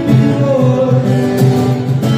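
Live acoustic folk music: two strummed acoustic guitars with a hand drum and a man singing.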